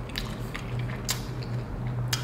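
Man chewing and biting into a flaky McDonald's pastry pie, with a few soft crackly clicks from the crust over a steady low hum.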